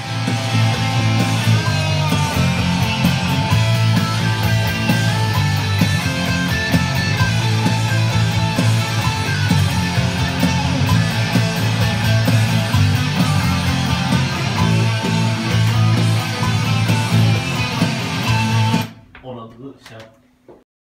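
Electric guitar played over full band music with a heavy low end, running continuously and cutting off near the end.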